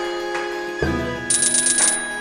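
Online video slot game sounds over its looping music: the spinning reels land with a thump about a second in, then a fast run of high ringing ticks follows as a small win is counted up.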